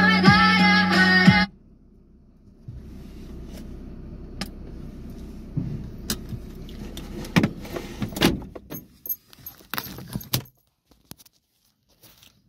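Music with singing that cuts off abruptly about a second and a half in. A low steady car-cabin rumble follows, with scattered clicks and knocks, then drops to near silence near the end.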